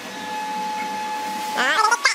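A steady high-pitched machine whine with hiss from an electric motor running in the woodworking shop, with a voice briefly near the end.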